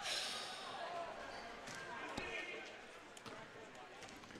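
Basketball gym sound during live play: a ball bouncing on the hardwood court among faint crowd chatter, echoing in the large hall.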